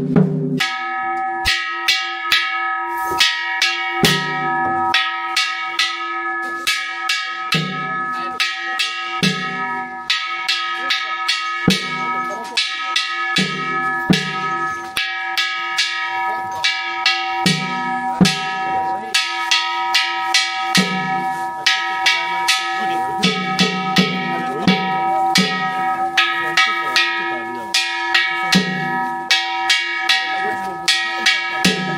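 Festival bell or hand gong struck rapidly and steadily, about three strikes a second, so its ringing never dies away between strikes. Deeper drum-like beats come in every second or two.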